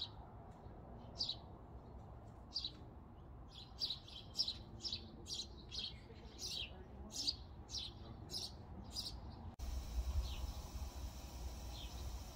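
A bird calling repeatedly with short, high chirps, a few spaced over a second apart at first, then about two a second. Near the end the sound changes abruptly to a steady hiss with a low rumble, with only a couple of faint chirps.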